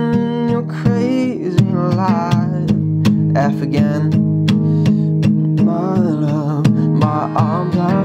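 Acoustic guitar with a capo on the third fret, strummed steadily on C and Fsus chords and lightly palm-muted, the picking hand barely touching the strings. A voice sings the verse melody over it.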